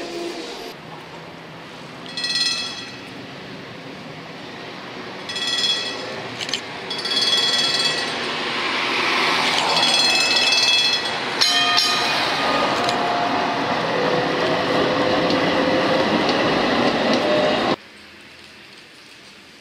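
A tram running on street track, its warning bell sounding in short rings about five times, over steady running noise that grows louder in the second half as it passes.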